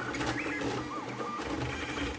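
Stepper motors of a Voron 0.2-based high-speed CoreXY 3D printer on a dry run with no part-cooling fans, driven at high current and voltage through fast toolhead moves. They give short whines that jump in pitch with each move, over a low hum.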